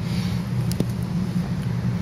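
A steady low hum with no words over it, and one faint click a little under a second in.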